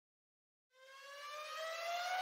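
A siren-like rising tone that fades in after a short silence, about three-quarters of a second in, and climbs slowly and steadily in pitch: an intro riser sound effect.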